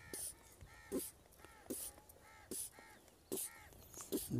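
High-pressure hand pump being stroked to charge a PCP air rifle: about five strokes a little under a second apart, each a short hiss of air with a squeak.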